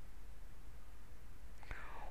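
Quiet room tone: a low, steady hiss from the recording, with a click and the start of a voice near the end.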